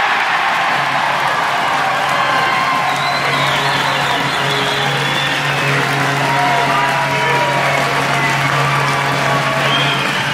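Ice rink crowd cheering and applauding a home goal, with goal music played over the arena's loudspeakers and a long sustained low note under it.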